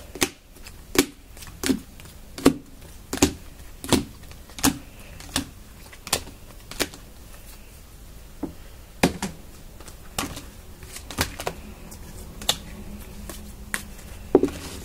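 Trading cards being handled and sorted, giving sharp clicks and taps. About ten come evenly, one every 0.7 seconds or so, then they turn sparser and irregular in the second half.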